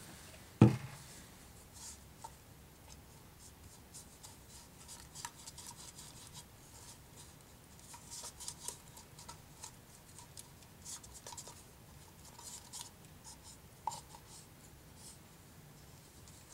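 A single sharp knock near the start, then faint, intermittent scratching and scraping of a paintbrush stirring gesso in a small plastic jar, working in water just sprayed in to loosen the drying gesso.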